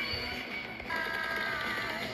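Cartoon soundtrack music and sound effects played through a TV speaker, with a held chord coming in about a second in.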